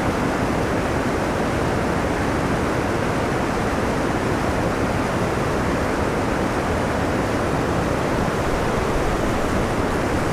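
Steady rush of creek water churning over a spillway and falls into whitewater.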